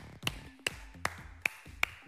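A man clapping his hands slowly and evenly: five sharp claps, about two and a half a second.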